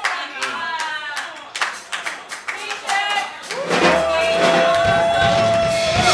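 Congregation clapping with voices calling out in response. About three and a half seconds in, a keyboard starts holding one long steady note over a low hum.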